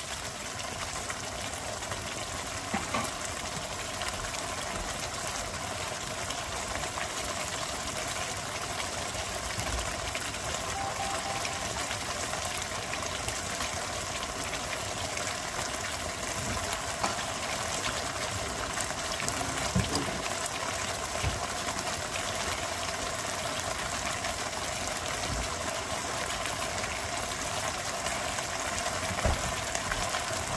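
Semi-gravy mutton curry bubbling and simmering in a large pan, a steady hiss of bubbling liquid, with a few light knocks.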